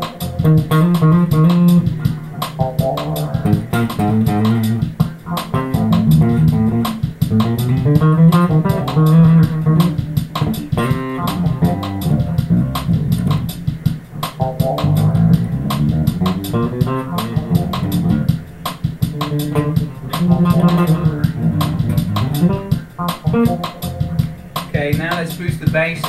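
Japanese-made Ken Smith Burner electric bass played continuously, a busy line of plucked notes with sharp attacks. It is set to the neck pickup with the EQ balanced.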